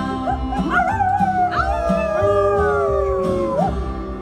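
Singers howling like dogs, several voices swooping up and sliding slowly down together, over a bluegrass band whose upright bass and guitar keep a steady beat. The howling breaks off just before the end.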